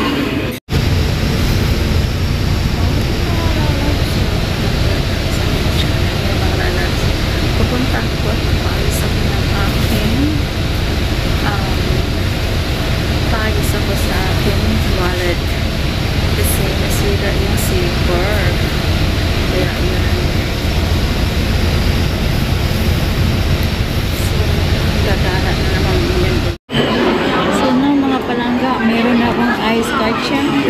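Steady low rumble of a bus heard from inside the passenger cabin, with faint voices over it.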